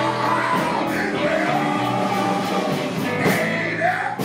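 Live blues band playing: drum kit with cymbals, electric guitar and bass, with a bending lead line carried over them.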